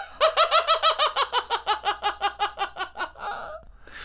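A man laughing hard and high-pitched in a rapid run of ha-ha bursts, about seven a second, that trails off near the end.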